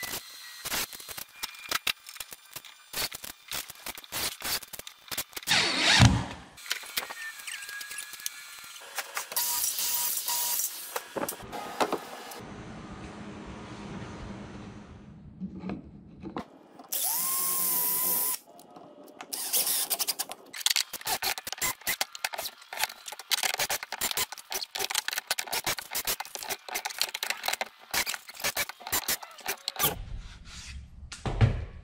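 DeWalt cordless drill driving screws in short bursts, with two longer runs in the middle, amid many clicks and clatter of screws and parts being handled.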